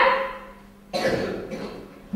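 A child karateka's short, forceful shouts with his techniques during a Goju-ryu kata: a loud one right at the start that fades over about half a second, and another about a second in.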